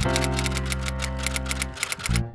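A rapid, even run of typewriter keystrokes clacking over music that holds a low sustained chord.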